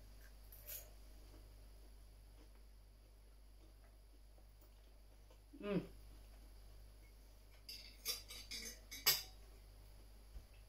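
A metal fork clicking and scraping against a plate several times in the last few seconds, the final tap the loudest, after a long quiet stretch.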